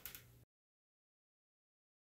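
Near silence: a faint tail of a short sound fades in the first half-second, then the audio cuts out to complete silence.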